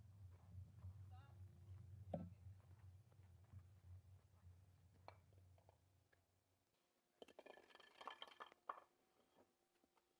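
Near silence: a faint low hum that drops away about two-thirds of the way through, and faint distant voices. Then a short run of light clinking, over about a second and a half.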